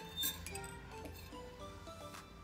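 A drinking tumbler clinks once, sharply, as it is picked up about a quarter second in. Background music plays underneath.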